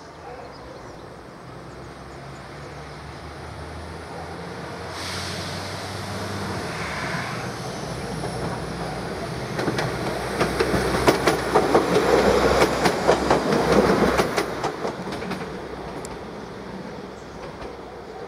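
A PESA-built ČD class 844 diesel multiple unit running past, its engine hum growing louder. From about halfway through, a quick run of wheel clicks over rail joints peaks and then fades as it moves away.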